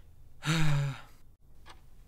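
A person's voiced, weary sigh, about half a second long and falling slightly in pitch, voicing a cartoon character's boredom and exasperation.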